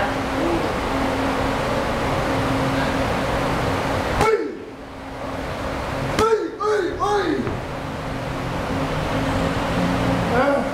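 Muay Thai pad work over the steady whir of gym fans: a sharp strike on the pads about four seconds in, then a quick run of short shouted calls falling in pitch around six to seven seconds.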